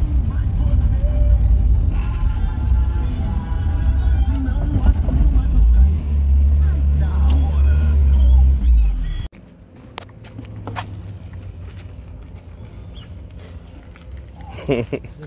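Volkswagen Santana driving, its low engine and road rumble heard from inside the cabin with music playing over it. About nine seconds in this cuts off suddenly to quieter outdoor background with a few sharp clicks.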